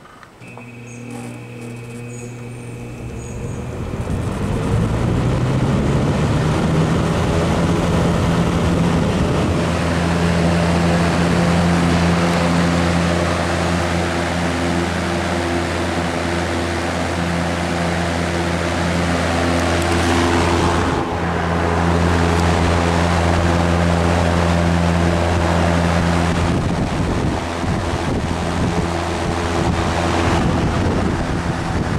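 General Electric W-26 window box fan started on high: the shaded-pole motor's hum rises in pitch as the blades spin up over the first few seconds, building to a steady, loud rush of air over a low motor hum.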